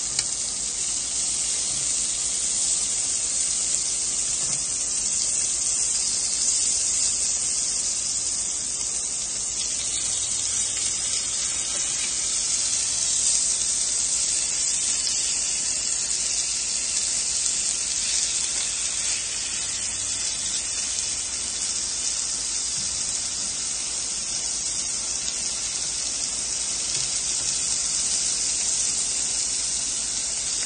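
Salmon and meat sizzling steadily on a hot tabletop grill plate, a continuous high hiss.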